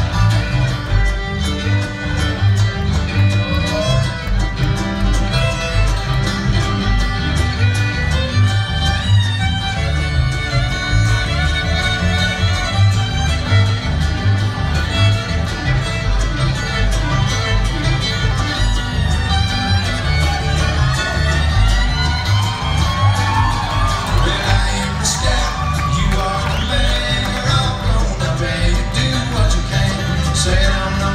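Live bluegrass string band playing an instrumental passage, the fiddle to the fore over a driving upright bass, with mandolin, acoustic guitar and banjo.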